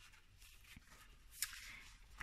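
Faint handling of paper: a card envelope and its flap being moved and pressed by hand, with a single light tap about one and a half seconds in.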